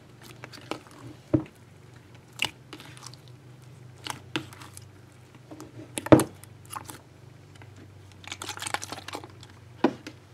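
Hands kneading, stretching and folding a large mass of mixed slimes in a bowl: irregular wet squishes and pops, the loudest about six seconds in and a quick run of them near the end, over a low steady hum.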